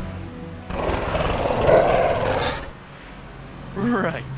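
A cartoon dog's growl, rough and loud, lasting about two seconds, as music fades out just before it.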